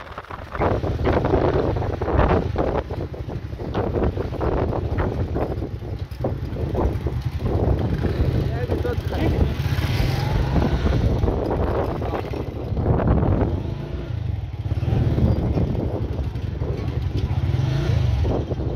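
Small motorcycle engines running at idle close by, a steady low rumble, with people talking indistinctly.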